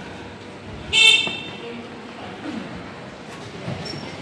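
A scooter horn gives one short, high-pitched toot about a second in, over steady street noise.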